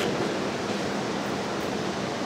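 Steady, even rushing background noise of a large hall, with no distinct event.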